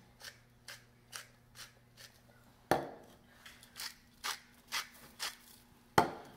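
Pepper mill grinding peppercorns in short repeated crunches, about two a second. There is one heavier thump about halfway through.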